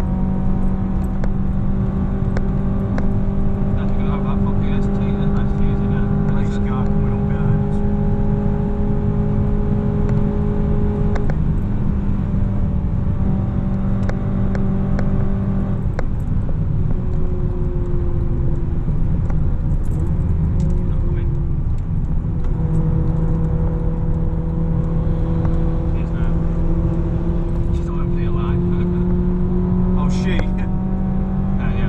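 Honda Civic Type R FN2's 2.0-litre K20 i-VTEC four-cylinder engine heard from inside the cabin at track speed, its note slowly rising as it pulls. It eases off about eleven seconds in, dips and wavers for a few seconds past the middle, then climbs again toward the end, over steady road and tyre noise.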